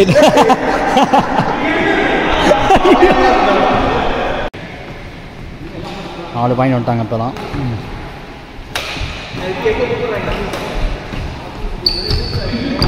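Badminton doubles rally on a wooden indoor court: sharp racket strikes on the shuttlecock and players' footfalls, mixed with players' voices calling out.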